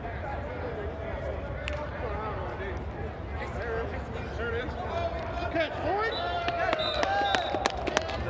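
Players and onlookers shouting and calling out during a flag football play inside an air-supported sports dome. The voices grow louder and busier in the second half, with a few sharp clicks among them.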